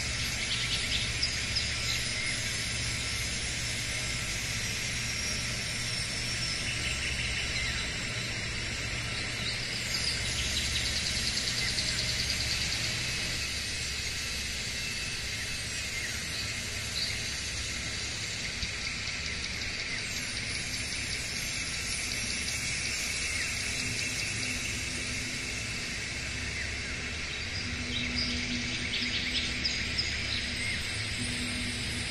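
Birds chirping and trilling over a steady low hum, with a dense burst of trilling about ten seconds in.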